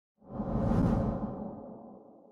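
Whoosh sound effect of an animated video intro. It swells in about a quarter second in, peaks within the first second, then fades away.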